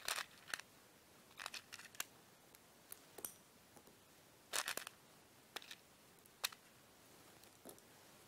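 Faint, irregular small clicks and ticks of dry maize grains being handled: picked from a small dish and dropped into glass beakers of sandy soil, with a short cluster of clicks about halfway through.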